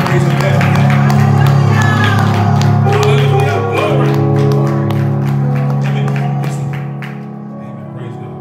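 Yamaha electronic keyboard playing held chords, with hand clapping and voices over it. The music and clapping die away about seven seconds in.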